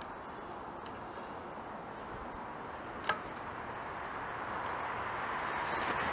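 A shotgun being handled and loaded at a shooting bench, with one sharp click about three seconds in, over a steady low outdoor noise.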